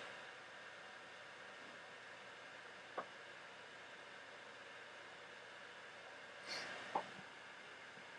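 Compaq Evo N1020v laptop's cooling fan running with a faint steady hiss, working hard to cool the laptop's hot-running desktop Pentium 4 (2.4 GHz Northwood) processor. A faint click comes about three seconds in and another near the end.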